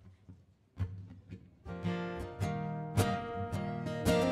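Acoustic guitars opening a song: a few soft plucked notes, then strummed chords come in louder about a second and a half in, with a steady strumming rhythm.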